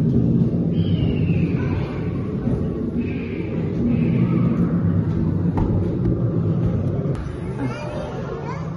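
Low, steady droning ambience of a large exhibit hall, with faint voices in the background.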